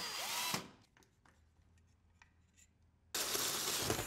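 Cordless drill driving mounting screws for a security camera bracket into a ceiling in two short runs. The first lasts about half a second and spins up with a rising whine; the second starts about three seconds in and lasts about a second.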